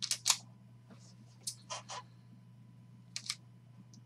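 A stack of trading cards being lifted out of its holder and squared by hand: a few short, sharp clicks, mostly in quick pairs, the loudest just after the start, over a steady low electrical hum.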